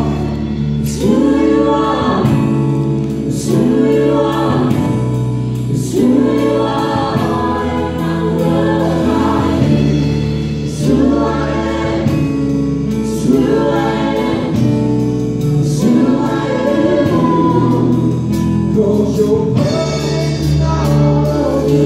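Church worship team singing a gospel song in several voices through microphones, with live band accompaniment that holds sustained low notes under the sung phrases.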